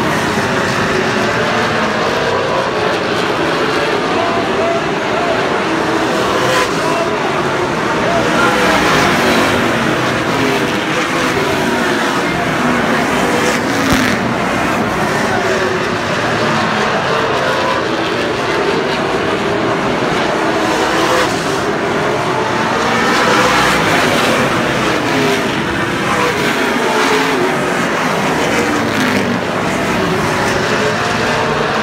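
A pack of late model stock car V8 engines running laps around an oval, a dense overlapping engine roar. It swells twice as the cars come by, about a third of the way in and again near three quarters of the way through.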